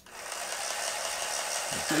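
Braun MultiQuick 7 MQ775 hand blender motor running with its balloon whisk attachment, spinning empty in the air at a low trigger setting. It starts right away, builds over the first half second, then runs steadily.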